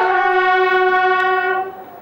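Military brass, bugle or trumpet, playing a slow ceremonial salute: one long held note that fades out near the end.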